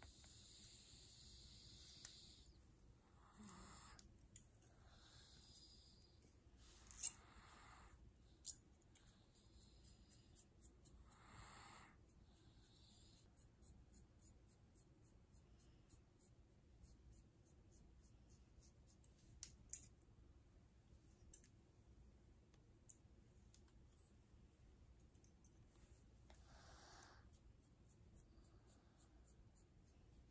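Long fingernails and the tip of a plastic comb scratching and parting hair close to the microphone: faint scratchy swishes that come and go, with a few sharp clicks and a short run of fine ticks.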